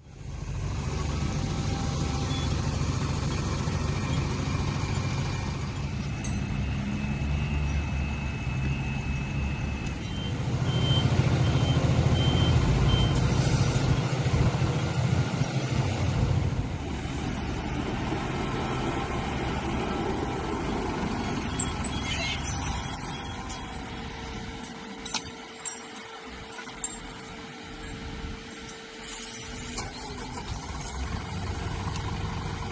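Heavy diesel engines of a rail work vehicle running as the work train is moved slowly along the track. The rumble swells in the middle and eases off after about two-thirds of the way through. A high warning tone beeps partway through, and light clicks and knocks come near the end.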